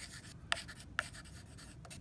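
Faint scratching of a carpenter's pencil writing a word by hand on a wooden board, with a few short ticks between strokes.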